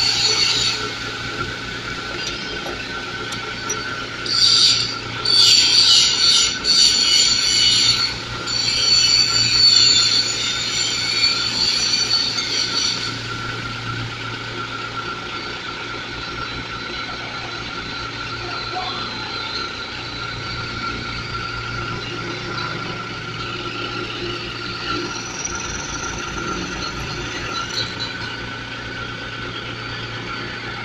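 Drill press running with its bit cutting into a metal piece clamped in a vise: a steady motor hum throughout, with louder, harsher cutting noise from about four to thirteen seconds in.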